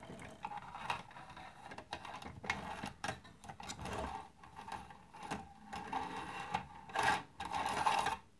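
Light clicks, knocks and rattles from handling the model fire engine's aluminium-and-brass ladder assembly as it is lifted off the body, over a faint steady hum.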